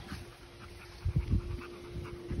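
A Rottweiler getting up and trotting across grass on recall: faint dog sounds, with a few soft thumps about a second in. A faint steady hum runs under it.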